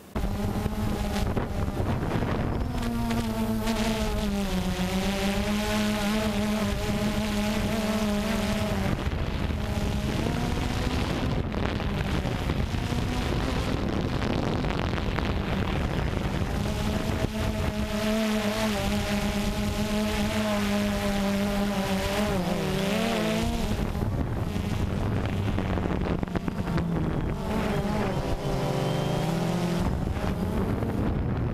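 DJI Phantom 2 quadcopter's motors and propellers buzzing steadily in flight, heard close up through the GoPro slung beneath it. The pitch sags and recovers a few times as the throttle changes.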